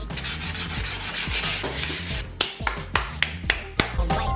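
Sandpaper rubbed by hand over a painted skateboard deck, roughening the surface so new paint will stick. The scratching is quick and continuous at first, then breaks into short separate strokes about three a second in the second half.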